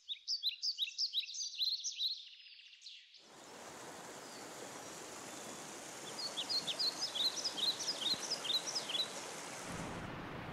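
Small birds singing in quick runs of short high chirps. From about three seconds in, the steady rush of a river running over rocks starts, and more birdsong is heard over it.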